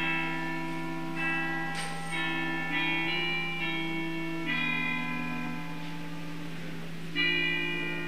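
Church organ playing slow, sustained chords that change every second or so over a low pedal note held throughout.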